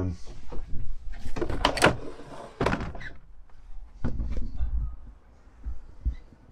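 Plastic camper roof hatch being unlatched and pushed open: a quick run of clunks and rattles about a second in, then a few lighter clicks a little later.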